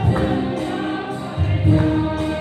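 A women's choir singing a gospel hymn together, amplified through microphones, with held notes that change pitch every half second or so.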